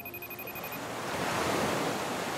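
White-noise riser: a wash of hiss swelling over about two seconds, the transition effect between two tracks of a beat mix. A faint high steady tone stops within the first second.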